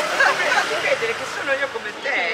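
Several women's voices talking over one another: lively conversational chatter.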